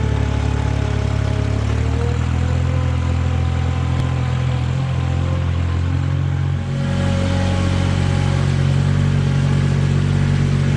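Ventrac 4500Z compact tractor's diesel engine running steadily as the machine drives; the engine note shifts about two-thirds of the way through.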